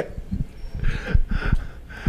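Short pause in a conversation with faint breaths or muffled laughter and a few low thumps, like bumps on a microphone or table.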